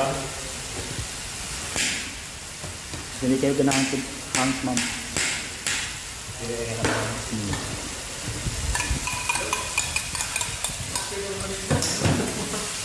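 Food frying in a wok with a steady sizzling hiss, and a knife knocking against a ceramic plate several times as vegetables are sliced on it.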